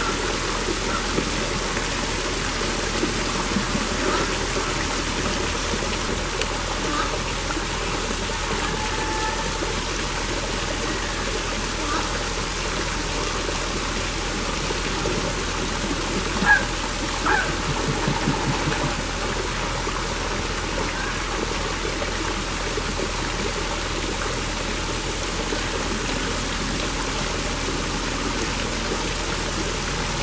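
Steady rush of running water, like a stream or small waterfall. A couple of brief sharp sounds just past halfway.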